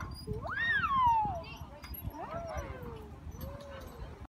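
A young child's high voice squealing in long rising-then-falling glides, one strong glide in the first second and fainter ones after.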